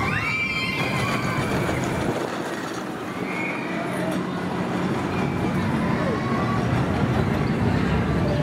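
Suspended roller coaster train running along its overhead track, with riders' high wavering screams near the start and a steady rumble from the train as it passes about midway.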